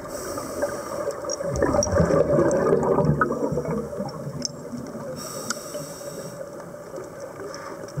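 Scuba breathing heard underwater through the camera housing: exhaled regulator bubbles gurgling and rumbling, with a hissing inhale from the regulator about five seconds in.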